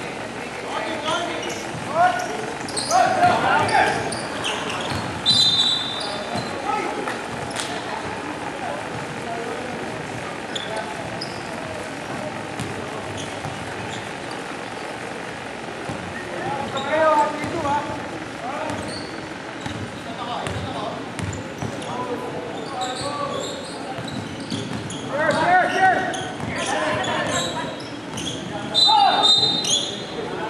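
Basketball game sounds in a gym: the ball bouncing on the hardwood floor, players' voices shouting in bursts that echo in the hall, and a couple of short high sneaker squeaks.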